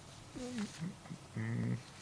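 A person's wordless vocal sounds: a short sound gliding up and down in pitch, then a low, steady hum like a thinking "hmm".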